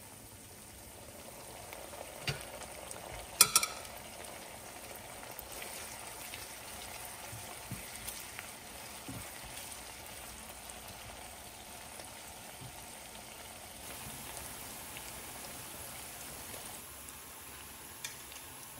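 Sliced onions frying in oil in a nonstick pan, a steady sizzle, with a couple of sharp knocks against the pan a little after two seconds and about three and a half seconds in, the second the loudest.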